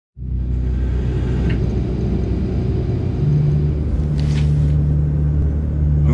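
Steady low rumble of an airliner cabin, with a deeper hum joining about three seconds in.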